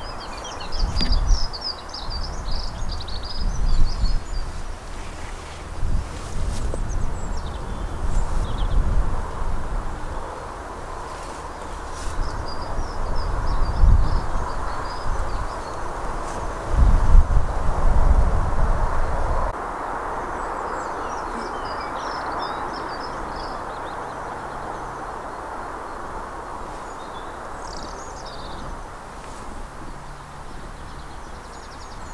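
Outdoor field ambience: birds calling in several short bursts over a steady rushing background, with wind buffeting the microphone in gusts for the first twenty seconds or so.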